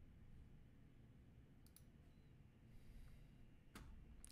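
Near silence with a few faint computer clicks: two close together a little under two seconds in and one more near the end.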